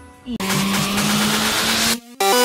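Electronic riser sound effect for a video transition: a loud rising whoosh of noise over a held low tone, starting about a third of a second in and cutting off abruptly.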